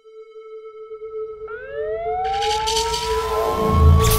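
Sound effects: a steady high tone, joined about a second and a half in by a siren-like whine that rises slowly in pitch, over a building hiss and rumble, with heavy low thumps near the end.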